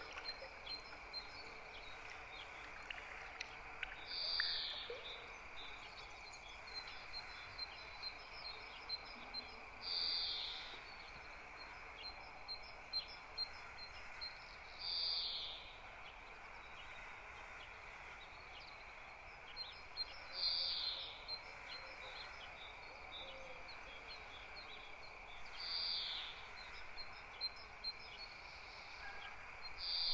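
Faint night ambience: a steady high chirring of insects with rows of rapid ticks, and a short, high, falling bird-like call that repeats about every five seconds.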